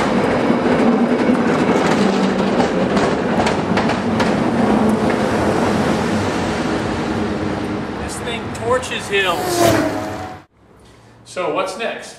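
Cable car on its street track, a steady loud rumble and rattle of the car and its running cable. Near the end come brief gliding, rising-and-falling cries before the sound cuts off suddenly.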